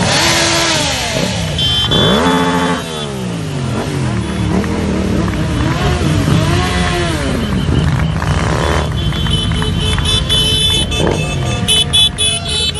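Motorcycle engines revving as the bikes ride past one after another, each rising and then falling in pitch as it goes by.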